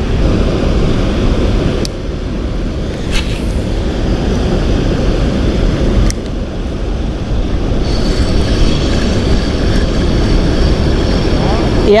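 Steady rushing of a flowing river, with a few sharp clicks.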